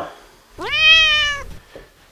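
A single high-pitched call, under a second long, that sweeps up at the start and then holds nearly level.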